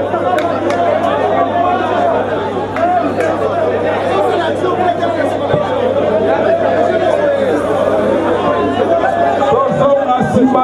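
Crowd chatter: many people talking over one another in a hall, at a steady level, with a constant low hum underneath.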